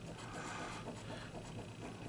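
Faint scratching of a coin on a lottery scratch-off ticket, rubbing the coating off a winning-number spot, over a low steady hum.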